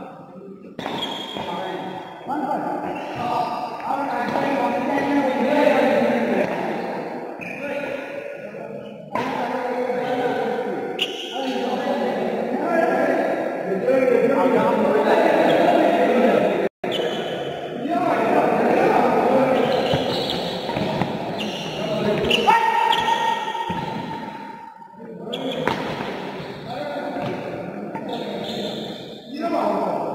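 Badminton rally in a large echoing indoor hall: rackets striking the shuttlecock and players' footsteps on the court, under steady voices of players and onlookers.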